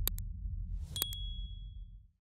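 Sound effects for an animated subscribe button over a low drone. A quick double click comes at the start, then a short whoosh and a second double click about a second in, with a high bell-like ding that rings on to the end.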